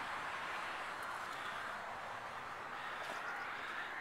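Steady background hiss, even throughout with no distinct knocks, clicks or tones.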